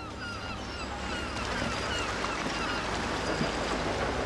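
A flock of gulls calling, many short downward-sliding cries overlapping and growing denser and louder, over a steady low rumble.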